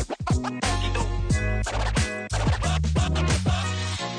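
Background music with a heavy bass line and quick downward pitch sweeps repeating throughout.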